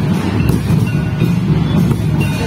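Traditional Santali dance music for the Baha festival: a heavy, pulsing low drum rumble with short held high notes above it.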